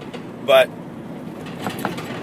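Steady cabin noise inside a work van, a low even rumble under a single spoken word.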